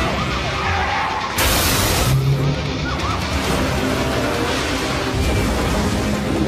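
Advert soundtrack of music mixed with car and traffic sound effects. A loud rushing hiss starts about a second and a half in and lasts about half a second.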